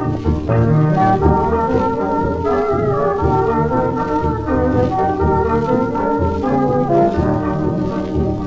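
1920s hot jazz dance band playing a foxtrot, reproduced from a 78 rpm shellac record: the ensemble holds chords over a steady beat, with little treble.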